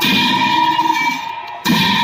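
Large ritual cymbals accompanying a Bhutanese masked cham dance, clashed twice, at the start and about a second and a half in, each clash ringing on, over low drumming.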